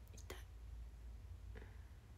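A woman speaking very softly, close to a whisper: a short phrase near the start and a faint sound near the end, over a steady low hum.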